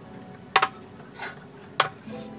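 Glass storage jars being set down on a pantry shelf and shifted by hand: a few sharp clinks and knocks, the loudest about half a second in and again near the end.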